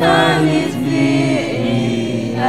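A choir singing gospel music with electronic keyboard accompaniment, long held notes that glide down in pitch partway through.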